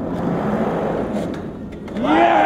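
Skateboard wheels rolling up a curved metal sculpture, a steady rumble that eases off near the end.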